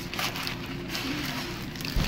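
Restaurant dining-room background noise: a steady murmur with faint distant voices and a few light clicks.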